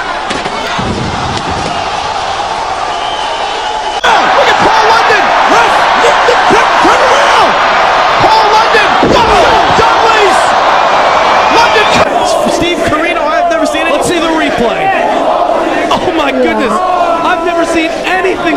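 Wrestling arena crowd cheering and shouting. It turns sharply louder about four seconds in and changes again near the middle as the footage cuts to other matches.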